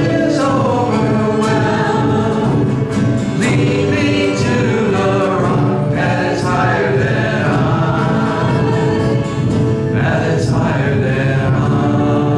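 A live worship band playing a gospel song: male and female voices singing together over acoustic and electric guitar, steady and continuous.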